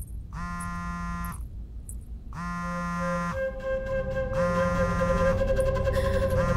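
Smartphone ringing for an incoming call: a reedy ringtone in bursts about a second long, repeating about every two seconds. A steady held tone of background music joins about halfway through.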